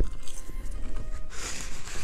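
Soft background music with faint, steady tones, under mouth noises of a man chewing a mouthful of garlic fries, and a short hiss in the second half.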